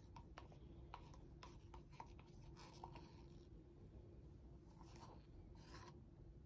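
Near silence with faint scattered scratches and taps of plastic paint cups being scraped out and set down on the canvas.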